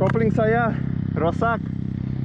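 Dirt bike engine idling steadily while voices call out over it twice.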